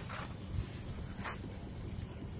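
Low rumble of wind buffeting the microphone outdoors, with two brief hisses, one at the start and one just past the middle.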